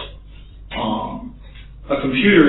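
A man clears his throat once, briefly, a little under a second in, during a pause in his talk, over a steady low hum in the recording.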